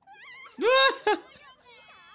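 Speech: high-pitched Japanese anime voices calling out back and forth, with one loud, high shout a little over half a second in.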